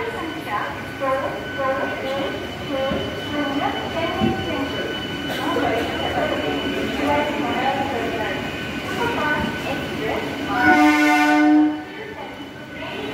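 A passenger train rolling slowly past a platform, with crowd chatter, then one loud horn blast from the locomotive, about a second long, near the end.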